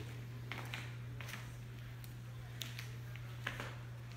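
Quiet room tone with a steady low hum, broken by a few faint, short clicks of handling.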